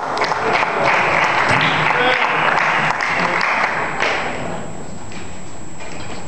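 Audience applauding, loud at first and dying away about four seconds in.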